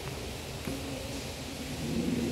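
Steady background noise of a large room, with faint distant voices starting under a second in.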